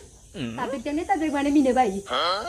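A woman's voice making a drawn-out wordless sound, starting about a third of a second in, first dipping in pitch and then held with a waver.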